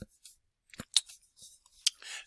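A few sharp computer mouse clicks.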